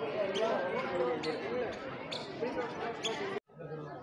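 Voices of people talking in the background, not close to the microphone, with a few light taps. The sound cuts off abruptly about three and a half seconds in and goes much fainter.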